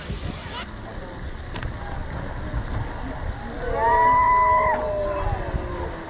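Low rumbling outdoor noise, and about three and a half seconds in a long drawn-out yell from a person, held and then falling in pitch over about two seconds.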